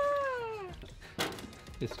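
A person's mock scream: one held, high-pitched vocal note that slides down in pitch and fades out. About a second later comes a short knock.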